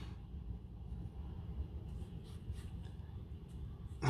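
Quiet room tone: a faint steady low hum, with a few faint ticks in the second half.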